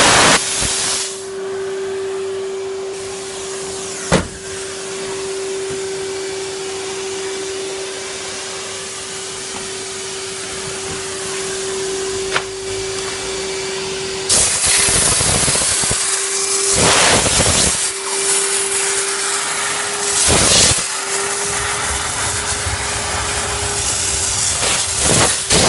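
Vacuum cleaner motor running with a steady whine and suction rush. A sharp click comes about 4 seconds in. From about 14 seconds in, loud surges of hiss from the steam-vacuum nozzle come and go over it.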